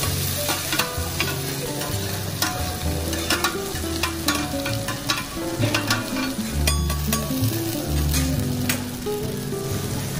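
Yakisoba noodles sizzling on a hot teppan iron griddle, with irregular sharp clicks and scrapes of a metal spatula against the plate. Faint background music plays underneath.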